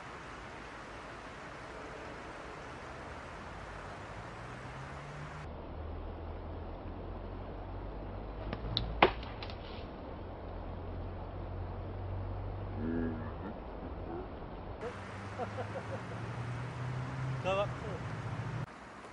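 A single sharp crack about halfway through, with a few smaller clicks just around it, over a low steady rumble that rises in pitch twice.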